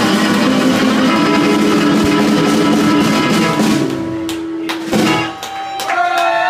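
Small live band of electric guitar, acoustic guitar and snare drum playing the close of a song. The playing thins out about four seconds in, and a last chord is struck near five seconds and left ringing.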